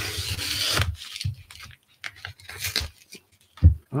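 A cardboard mailer torn open along its tear strip, the cardboard shredding for about a second, followed by lighter rustling of the cardboard and a single thump near the end.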